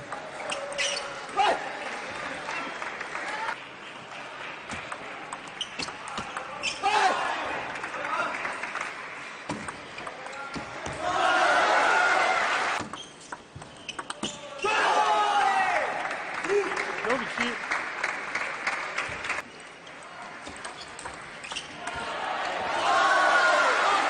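Table tennis rallies: the celluloid ball clicking sharply off bats and table. Between points there are stretches of voices shouting and cheering.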